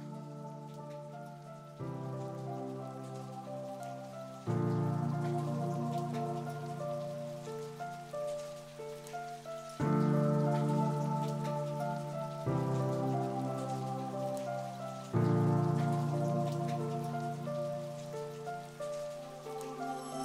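Slow instrumental background music of sustained keyboard chords that change every few seconds, layered with a steady rain sound.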